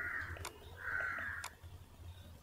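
Two faint bird calls, each about three-quarters of a second long, with a light click near the end of each, fitting mouse clicks on the form.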